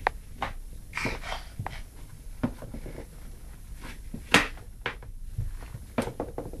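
A child's rubber rain boot knocking and scuffing on a wooden floor as a toddler tries to push his foot into it: a run of irregular short knocks, the sharpest about four seconds in.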